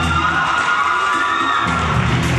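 Music playing while a young audience cheers, shouts and whoops.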